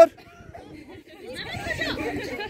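Only voices. A loud shouted word cuts off at the very start. After a quieter second, several people are chatting and calling out at once.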